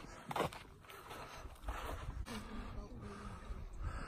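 Faint outdoor ambience with distant, indistinct voices, and one short knock or step just after the start.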